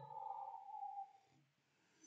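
A slurping sip from a mug: a faint, thin whistling tone that falls slightly in pitch for about a second, then stops.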